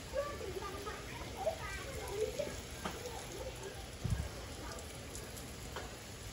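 Garden hose spray nozzle misting water over potted bonsai trees: a steady hiss of fine spray pattering on leaves and soil. There is a low thump about four seconds in.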